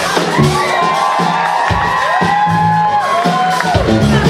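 Live funk band playing a song's intro, with long held notes that bend up and fall back in pitch, over a cheering crowd.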